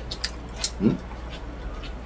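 A single short, rising whimper-like cry a little under a second in, with a few light clicks around it.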